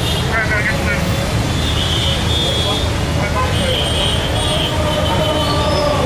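Voices of a gathered crowd over a steady low rumble, with scattered high chirping tones.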